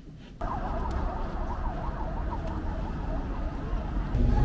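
An emergency-vehicle siren warbling quickly up and down in pitch, starting about half a second in, over the low rumble of street traffic.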